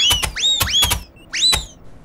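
Cartoon sound effects of custard blobs hitting the Noo-Noo: a quick run of sharp splats, each with a short whistling swoop that rises and then falls back, the last about a second and a half in.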